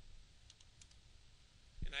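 A few faint computer keyboard keystrokes in quick succession about half a second in, as a web address is typed.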